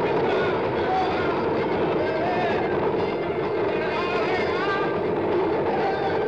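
Loud, steady street din: traffic noise mixed with many voices.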